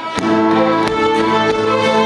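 A group of fiddles playing a tune together, coming in with held notes just after a sharp knock at the start.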